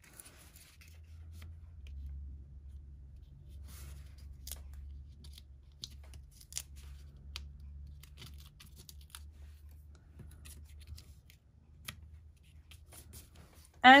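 Quiet paper-crafting handling: faint, scattered crisp ticks and rustles of card stock and small foam adhesive squares being peeled and pressed onto a card, over a low steady hum.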